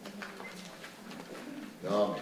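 A lull in a meeting room: faint low murmur of voices in the room, then a short burst of speech near the end.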